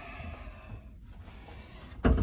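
Quiet room tone: a low, steady background hiss with no distinct sound events.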